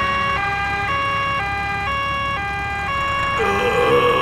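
Cartoon ambulance siren in a two-tone "nee-naw" pattern, switching between a high and a low note about every half second, over a low engine hum.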